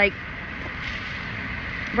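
Steady hiss and rumble of a vehicle running nearby, swelling a little in the middle.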